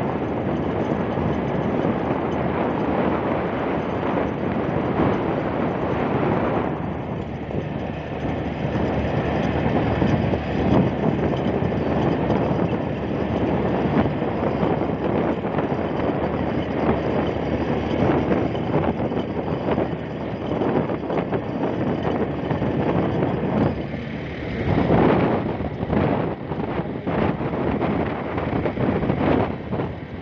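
Wind rushing over the microphone of a moving motorcycle, mixed with its engine and road noise. The rush turns gustier and uneven in the last few seconds.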